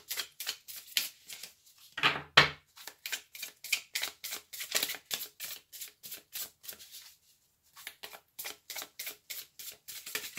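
A deck of tarot cards being shuffled by hand: a fast run of crisp card clicks, about four a second, with one louder knock about two and a half seconds in and a brief pause about seven seconds in.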